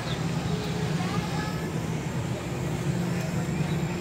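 A steady low mechanical hum, with faint voices of people nearby.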